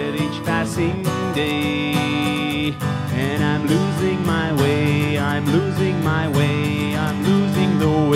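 Acoustic guitar strummed in a steady accompaniment, with a man's voice holding long, wavering sung notes over it.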